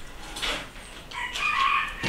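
A drawn-out, high-pitched animal call in the second half, preceded by a brief noisy rustle about half a second in.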